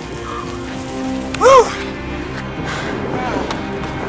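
Background music over a steady hiss, with a person's loud whoop about a second and a half in, pitch rising and falling, and a fainter one a little after three seconds.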